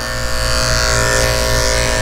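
Andis electric dog clipper fitted with a 1½ snap-on comb, running with a steady hum as it clips a puppy's curly coat.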